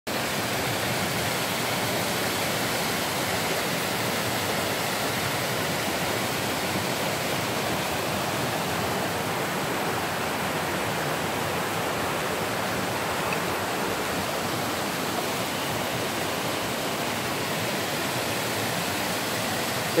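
A river pouring down a small rocky cascade into a pool: a steady, even rush of water.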